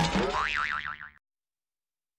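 The closing sound effect of a TV news programme's title jingle: a pitched tone that wobbles up and down in pitch a few times, then cuts off abruptly a little over a second in, leaving silence.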